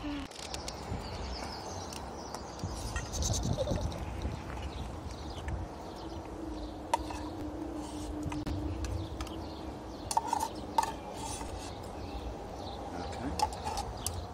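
Steady low rumble of motorway traffic with sharp clinks of a utensil against a metal cooking pot, a few of them close together near the end. A held, even tone sounds for a few seconds in the middle.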